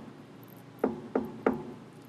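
Three quick knocks on a hard surface, about a third of a second apart, starting about a second in. They spell the column part of the POW tap code for the letter C: first row, third column.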